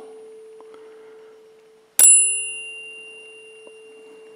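A tuning fork ringing with a steady hum, struck again about halfway: a sharp ding with bright high overtones that die away over a second or so, leaving the steady hum.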